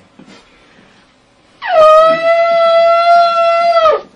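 Shofar blown in one long blast of about two seconds, starting about a second and a half in. The note swoops up at the start, holds steady, and drops off as it ends.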